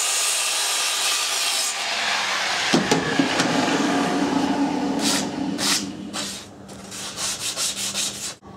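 Bosch circular saw cutting a 45-degree miter through a cedar board for about three seconds, then running on with a steady hum until about six seconds. Several sharp wooden knocks near the end as the cut board is handled.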